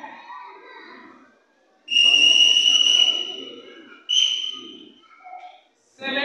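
A referee's whistle: a long blast starting about two seconds in, then a shorter blast about four seconds in, signalling the judges to raise their score cards.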